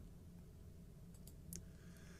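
Near silence with a faint low hum, broken by three faint, short clicks a little after the middle.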